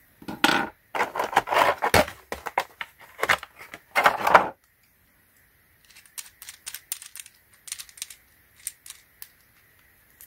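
Plastic crinkling and rustling as mount parts are handled in and around a clear plastic packaging tray, for about four and a half seconds. After a short pause come light, scattered clicks and taps of the plastic clamp, rubber insert and thumb screw being handled.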